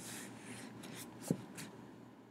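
Faint scratching strokes, with one soft click a little past halfway.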